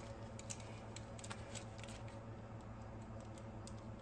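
Faint, scattered light clicks of small metal parts and tools being handled, over a steady low hum.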